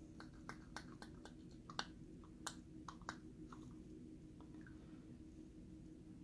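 Faint, scattered clicks and light taps of small metal gas-valve parts being handled, a solenoid plunger assembly and the aluminium valve body turned in the hands, over a low steady hum. The clicks thin out after about three and a half seconds.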